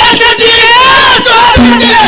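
A male ragni singer's loud, drawn-out sung line, with gliding pitch, over folk music accompaniment.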